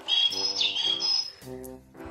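A loud, high bird-like chirping in the first second or so, with a quick downward slide in the middle. It plays over background music with brass.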